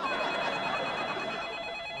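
Telephone ringing for an incoming call: one continuous ring made of steady high tones over a buzzing rattle.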